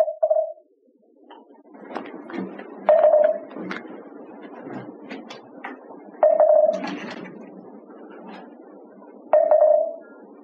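Moktak (Korean wooden temple percussion) struck three single times a few seconds apart, each a pitched knock with a short ring, keeping time for the congregation's bows. The first half second holds the fading end of a quickening roll, and a low shuffle and rustle of many people moving runs beneath.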